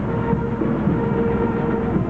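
Engine of a vintage truck running as it rolls slowly along, a steady low rumble, with a steady held note over it from about a third of a second in to near the end.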